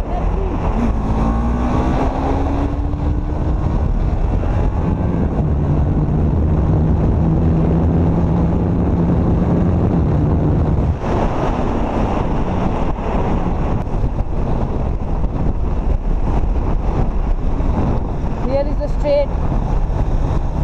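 TVS Apache RR 310's single-cylinder 313 cc liquid-cooled engine running under way, heard from on the bike with heavy wind rush on the microphone. The engine note climbs over the first few seconds, then holds steady, and the sound changes abruptly about eleven seconds in.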